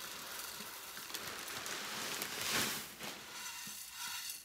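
Coarse pumice grains poured from a bag, pattering and rattling into a ceramic bonsai pot. The pour is loudest about two and a half seconds in and thins out near the end.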